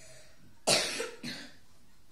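A person coughing twice about a second in, the first cough loud and the second weaker.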